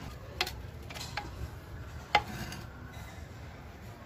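Three sharp metallic clicks as small steel parts of a Lambretta rear brake assembly are removed and handled. The last one, about two seconds in, is the loudest.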